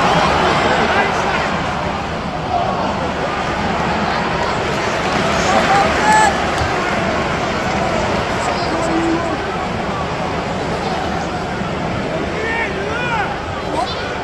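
Football stadium crowd: a steady din of many voices, with scattered shouts rising out of it.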